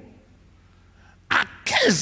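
After about a second of quiet, a single short, sharp burst of breath close into a handheld microphone, followed at once by a man's speaking voice.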